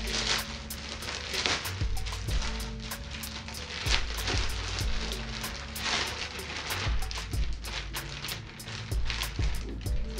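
Background music with a steady ticking beat and deep bass, over the rustle and crinkle of plastic and paper packaging being opened.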